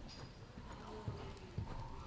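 Hoofbeats of a horse loping on soft dirt arena footing: dull thuds, with two stronger ones a little past the middle.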